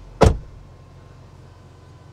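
Jeep Grand Wagoneer L's power moonroof sliding open, its electric motor giving a steady low hum inside the cabin.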